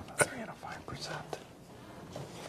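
Handheld corded microphone being handled: a sharp click a moment in, then a couple of softer knocks, over faint murmured voices.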